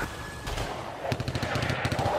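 Machine-gun fire sound effect: a fast rattle of shots that starts faint about half a second in and grows denser toward the end.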